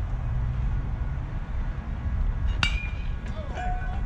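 A baseball bat hits a pitched ball about two and a half seconds in: one sharp metallic ping that rings briefly. Voices call out just after it, over a steady low rumble.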